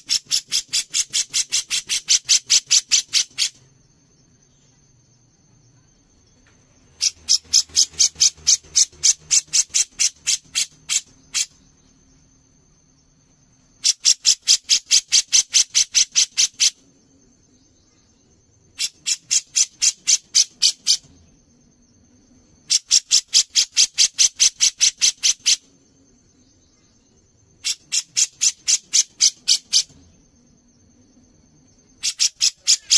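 Grey-cheeked bulbul (cucak jenggot) repeating rapid harsh notes in six bursts of about three to four seconds each, about five notes a second. A steady high-pitched drone runs behind.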